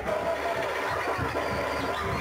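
Live club sound: a voice calling out over a steady low hum and crowd noise, with the dance music's beat dropped out.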